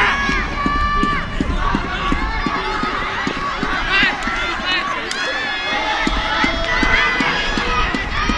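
Several voices shouting and calling out over each other, many of them long held calls, from players and sideline supporters during live lacrosse play. Short sharp knocks from stick contact and running on the turf are scattered through.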